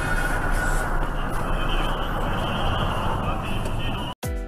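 Steady engine and road noise inside a moving vehicle's cabin, with a low, even engine hum.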